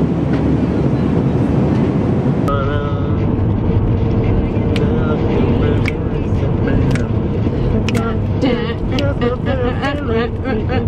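Steady aircraft cabin drone for the first two or three seconds. Then voices over the steady hum of a car interior.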